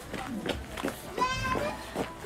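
A young child's voice: one brief, high-pitched call a little past the middle.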